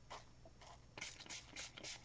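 Faint, short hisses of a pump spray bottle of shimmer mist spritzing colour onto fabric seam binding, several puffs coming closer together in the second half.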